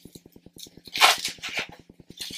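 Brief rustle and rub of a GoPro wrist-mount strap being handled on the forearm, about a second in.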